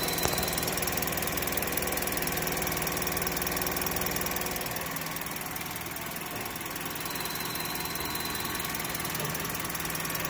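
Car engine idling steadily, picked up close to the engine under the open bonnet, with one short click just after the start.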